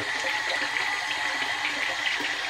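Bathroom tap running into the sink basin, a steady rush of water filling it.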